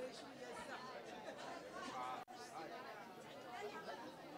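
Faint background chatter of several people talking at once, the voices indistinct, with a brief gap a little over halfway through.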